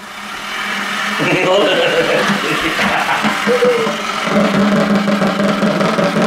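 Motor of a Stirricane bucket mixer spinning up and running steadily under a plastic bucket, building over the first second or so into a continuous churning run, with a low hum that steadies about four seconds in.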